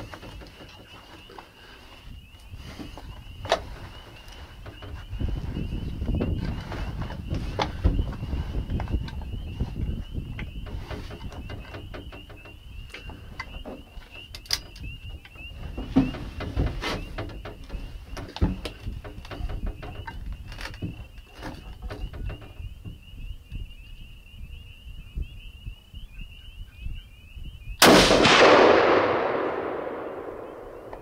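A single .300 Winchester Magnum rifle shot near the end: a sharp, loud crack followed by a rolling echo that fades over about two seconds. Before it, a steady high trill runs in the background.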